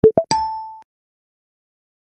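Short electronic sound effect: two quick rising plops followed by a bright ding that fades out within about half a second.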